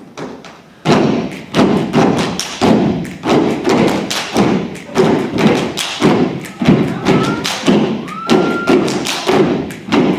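Step team stepping in unison, sharp stomps and claps on a steady beat of about two strikes a second. The beat turns much louder about a second in.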